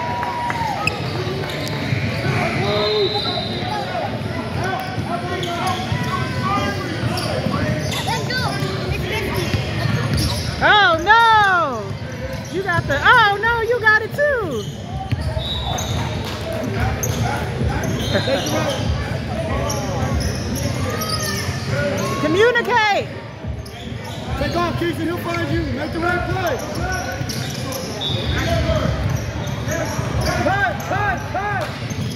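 Basketball game in a large gym: a ball dribbling on the hardwood court over the steady chatter of players and spectators. A few loud, short pitched calls rise and fall about a third of the way in and again past the middle.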